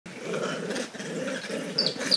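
Golden monkeys calling during an encounter between two groups: a run of low, rough calls, then a short high chirp near the end.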